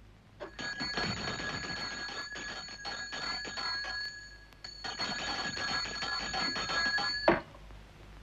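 A bell with a fast-striking clapper, ringing continuously in two long rings. The first lasts about four seconds; after a short break, the second lasts about two and a half seconds and cuts off suddenly.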